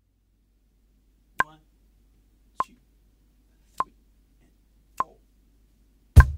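Metronome count-in at 50 BPM: four short, even clicks about 1.2 seconds apart.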